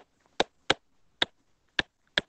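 Stylus tip tapping on a tablet's glass screen during handwriting: four short, sharp clicks spaced unevenly across two seconds.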